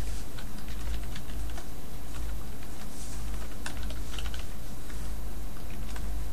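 Typing on a computer keyboard: scattered, uneven keystroke clicks over a steady low hum.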